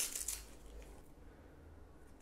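A nylon watch band being handled and fastened around the wrist: a short scratchy rustle in the first half second, then only faint handling.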